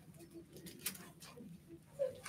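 Faint rustling and soft clicks of thin Bible pages being turned, with a few short, faint low tones mixed in.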